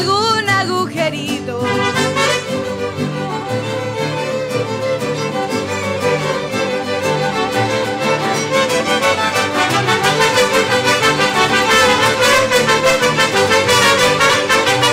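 Mariachi ensemble playing an instrumental passage between verses: violins and trumpets over strummed vihuela and guitar, with a guitarrón bass. A sung phrase ends about a second and a half in, and the music swells in the last few seconds.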